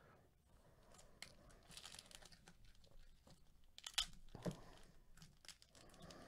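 Foil wrapper of a Panini Rookie Anthology hockey card pack faintly crinkling and tearing as it is pulled open by gloved fingers, with a few sharper crackles about four seconds in.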